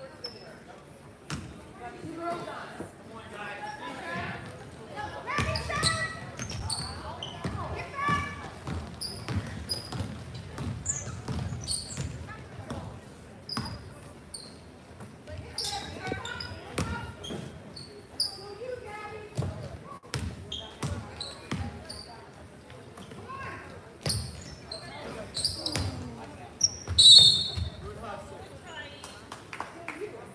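Basketball game sounds in a large echoing gym: a ball bouncing on the hardwood, short high sneaker squeaks and voices calling out from players and spectators. Near the end comes one loud shrill blast, a referee's whistle stopping play.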